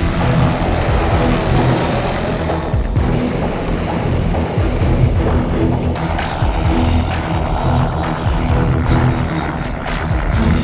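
Music over the engine and propeller of a REVO weight-shift trike flying low past and banking through a steep, high-G turn.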